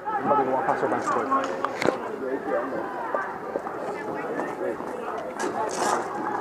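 Overlapping chatter of several voices, none clear enough to make out, with one sharp knock about two seconds in.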